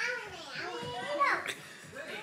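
Toddlers' voices as they play: high-pitched babbling and calling, with the loudest call about a second in.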